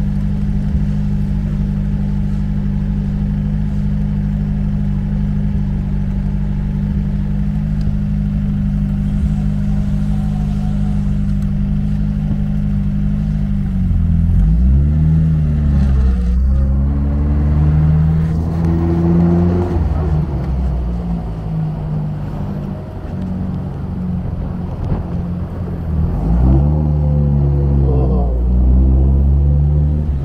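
1953 MG TD Mark II's four-cylinder XPAG engine idling steadily and slightly fast for about fourteen seconds. It then revs up as the car pulls away, the revs climbing and dropping with each gear change, and it revs up again near the end.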